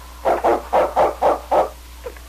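A dog barking six times in quick succession, the barks of Malamute lead dog King in an old-time radio drama, announcing his arrival at a door.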